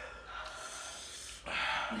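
A person sniffing and breathing hard through a running nose, with a louder rush of breath about a second and a half in: the nose and breathing reacting to extremely spicy noodles.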